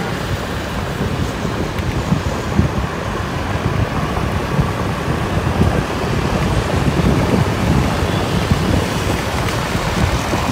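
Wind buffeting the microphone of a moving motorbike, a steady noise with irregular low gusts, over the bike's own riding noise.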